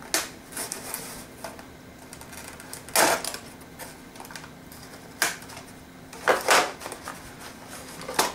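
Clicks and rustles of plastic and cardboard toy packaging being handled and cut apart, in scattered short bursts, the loudest about three seconds in and again a little after six seconds.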